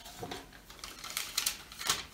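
A folded paper slip pulled from a clear plastic box and unfolded: a run of crisp paper crackles and rustles, loudest near the end.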